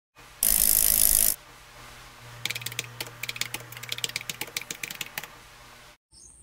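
Logo intro sound effects: a loud hissing burst about half a second in, lasting just under a second, then a quick, irregular run of clicks like typing for about three seconds over a low steady hum.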